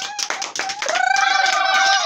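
Several people clapping quickly and unevenly. About a second in, a high voice breaks into one long held cry, and other voices join it.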